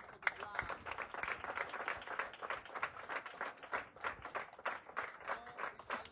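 A group of children clapping their hands together in a fast, steady rhythm, with their voices mixed in.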